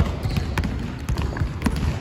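Basketball being dribbled on a hardwood gym floor: a run of sharp bounces, several in two seconds.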